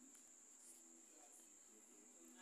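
Near silence: faint room tone with a thin, steady high-pitched whine.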